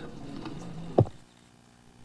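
Faint room noise picked up by a conference microphone, broken by a single short low pop about a second in, after which the background hiss drops away sharply.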